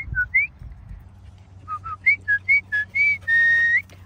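A person whistling. First come a few short chirpy notes, then after a pause of about a second a quick run of short notes stepping up and down. It ends in one long held note that sweeps upward at the end.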